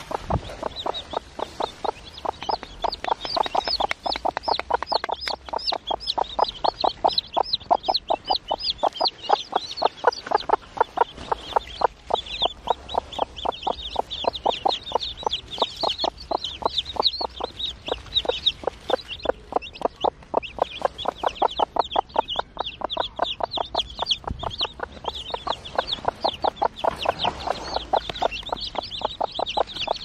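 Newly hatched chicks peeping continuously in high, falling cheeps, over a broody hen's rapid clucking on the nest.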